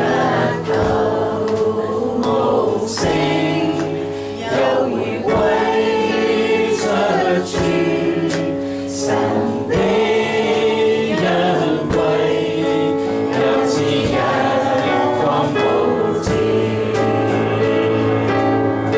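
Worship music: voices singing a gospel hymn together over electronic keyboard accompaniment, with a regular beat.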